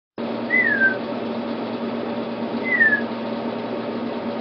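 Emu chick chirping from inside its unhatched egg: two short, clear, downward-sliding whistles about two seconds apart.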